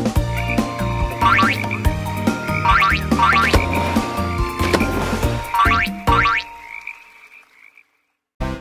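Cartoon frog croak sound effects, about five short rising calls, over upbeat children's music that fades out near the end.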